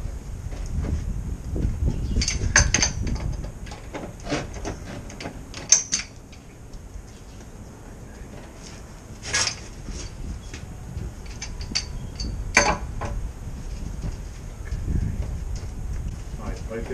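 Metal clinks and clanks of a pipe wrench working on threaded galvanized steel gas pipe and fittings, with four sharper clanks spread through.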